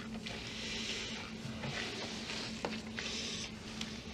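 A person breathing audibly through the nose while tasting whisky: three or four short, soft, airy breaths about a second apart.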